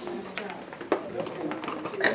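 Low murmur of young children's voices in a small classroom, with a few sharp clicks and taps, the loudest a little under a second in.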